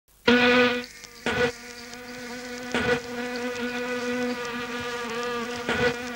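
A fly buzzing in a steady drone that wavers slightly in pitch, broken by four short, louder bursts.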